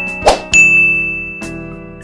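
Bell-ding sound effect of a subscribe-button animation. A short sharp swish comes about a quarter second in, then a bright bell ding about half a second in that rings on and slowly fades, with a softer click near the middle of the ringing.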